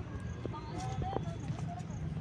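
Sandalled footsteps on a brick-paved path: a few sharp clicks of soles on the pavers, over faint voices in the background.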